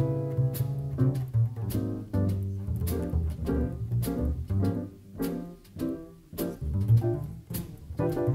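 Jazz piano trio playing a blues: piano chords and runs over a plucked double bass line, with cymbal strokes keeping time.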